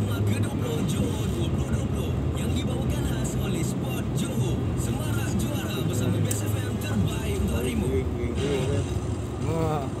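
Car radio playing voices over music, heard inside the cabin over the steady low hum of the vehicle's engine.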